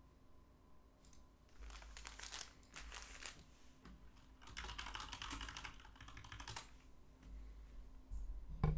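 Typing on a computer keyboard: two spells of rapid key clicks, the first starting about a second in and the second about four and a half seconds in.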